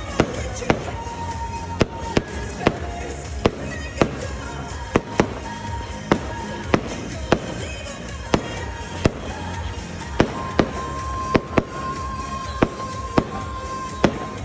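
Aerial fireworks bursting: a string of sharp bangs at uneven spacing, about one or two a second, over steady music.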